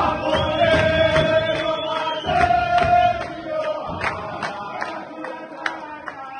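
A group of footballers singing a chant together, voices holding long notes, over a steady beat of hand claps about two or three a second. The singing grows quieter in the second half.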